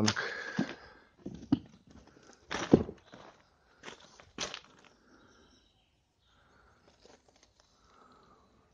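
Footsteps crunching on rough ground, a handful of uneven steps in the first half.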